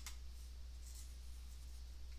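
Faint room tone with a steady low electrical hum, a single sharp click at the very start and a soft brief scuff about a second in.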